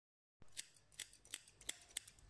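Hairdressing scissors snipping through a held section of long hair: five crisp snips, about three a second.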